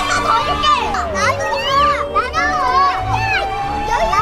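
Children chattering over background music, which holds a long note that slides down in pitch about a second in and then stays steady.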